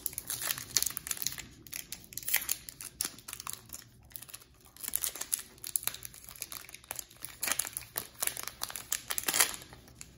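Foil wrapper of a Pokémon trading-card booster pack crinkling and tearing as fingers peel it open, an irregular run of crackles.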